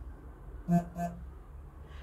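A woman's voice making two short, quiet hummed syllables close together just under a second in, over a steady low hum.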